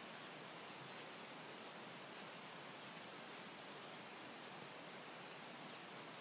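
Faint, steady outdoor ambience on a brushy dirt trail: an even hiss with a few soft ticks scattered through it.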